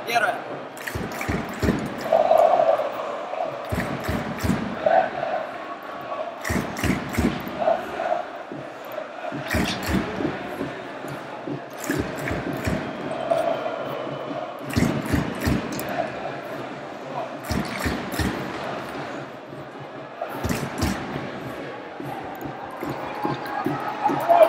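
Ice hockey play in an arena: irregular sharp clacks of sticks, puck and boards, over the steady murmur and chatter of the crowd.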